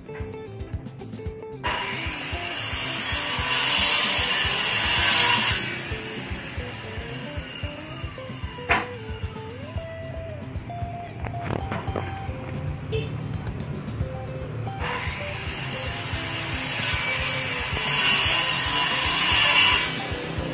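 Background music, and twice a power-driven rotary brush scrubbing across a teak door panel: a loud, high, rushing scour about two seconds in that lasts a few seconds, and again in the last five seconds.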